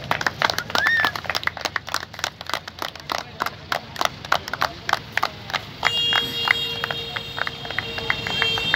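Rapid, irregular sharp claps or clicks, with a short rising whoop about a second in. About six seconds in, a steady horn-like tone with several fixed pitches starts and holds.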